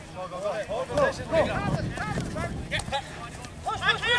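Several men's voices shouting short calls across a football pitch during play, overlapping and heard from a distance, too indistinct to make out as words.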